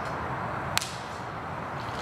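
A single sharp click about three-quarters of a second in, over steady low background noise.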